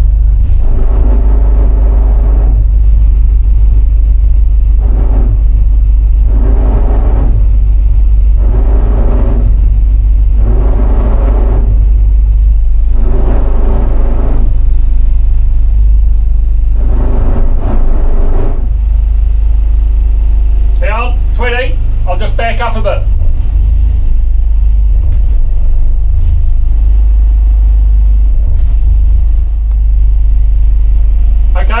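A motor yacht's diesel engine running with a loud, steady deep rumble, heard from the pilothouse at the helm. Over it, a mid-pitched sound comes and goes every couple of seconds for most of the first twenty seconds, and two brief high wavering sounds come about three quarters of the way through.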